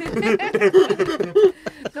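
People laughing and chuckling in a small room, with a spoken word near the end.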